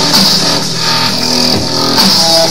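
Dubstep music: an electronic beat with sustained synth notes, no singing.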